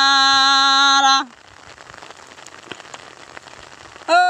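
A singing voice holding one long steady note that cuts off about a second in, followed by a faint outdoor background hiss with a few small crackles.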